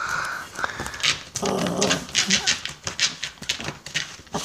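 Dog sniffing hard at the floor in quick, repeated snuffles, with a brief whine at the start.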